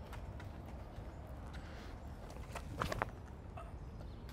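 Faint footsteps of a disc golfer's run-up across a concrete tee pad, with louder steps about three seconds in as he plants and throws.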